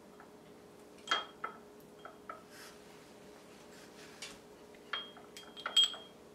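A paintbrush clinking against glass as it is dipped into a shot glass of glue-and-coffee mix and worked against a glass jar: a few scattered light taps, some with a brief high ring, the loudest near the end.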